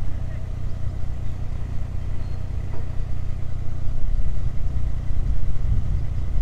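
Narrowboat's inboard engine running steadily at slow revs in reverse while the boat is turned, a low hum that grows a little louder and rougher about four seconds in.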